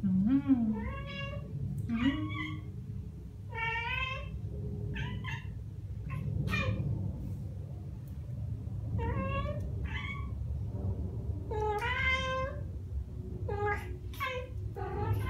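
Ragdoll cats chattering at birds outside the window: about ten short, rising-and-falling chirping meows in irregular bursts, with a pause in the middle, over a low steady rumble.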